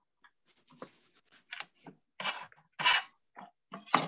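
Irregular rustling and clattering of objects being handled, a string of short knocks and scrapes that comes closer together in the second half.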